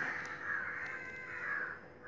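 Faint crow cawing, rough and drawn out, over a thin steady hum.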